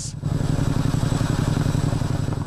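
Helicopter hovering with a load on its long line: a steady, rapid rotor beat with engine noise.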